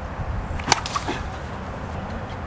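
A single sharp crack of a plastic wiffleball bat striking a wiffle ball, about two-thirds of a second in.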